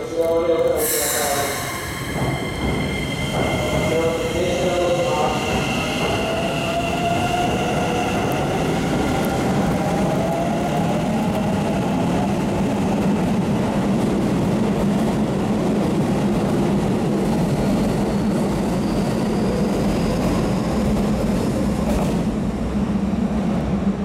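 Keikyu 1000 series electric train pulling out of a station. A short hiss comes about a second in, then the traction motors whine, rising in pitch as the train accelerates, followed by the steady running noise of wheels on rails as the cars pass close by.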